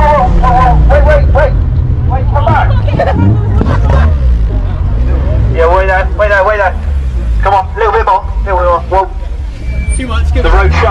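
Car engines rumbling as cars drive off, with a crowd of people talking and shouting over them.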